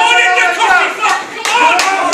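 Ringside spectators shouting at a boxing match, with a few sharp smacks in the second half.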